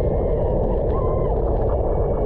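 Steady rushing noise of wind and wet-road tyre spray on a bicycle-mounted camera riding in the rain, with a faint short tone rising and falling about a second in.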